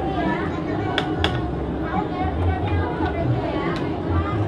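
Several people talking in the background, with two sharp knocks about a second in and another near the end.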